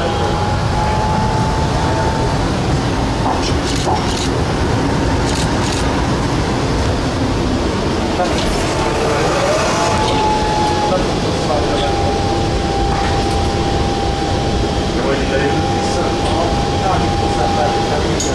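Tram running on its rails, heard from on board: a steady rumble with a thin, steady whine held through most of the ride.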